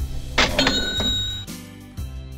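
Cash-register "ka-ching" sound effect: a sharp clang about half a second in, then a bell ringing for about a second, over light background music.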